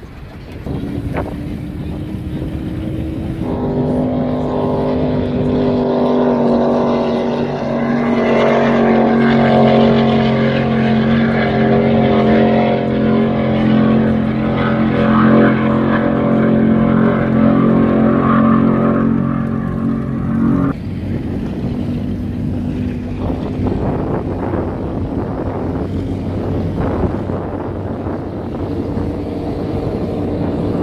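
Motorboat engines running close by. A steady, deep engine note starts a few seconds in and cuts off abruptly about two-thirds of the way through, leaving a rushing noise of engines and water.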